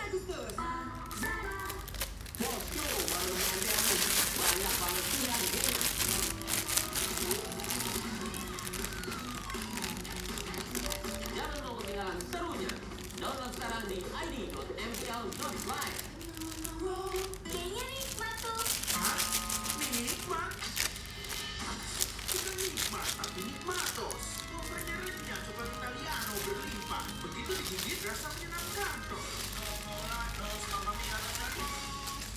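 Music with singing playing, with crinkling and rustling handling noise close to the microphone a couple of seconds in and again near the middle.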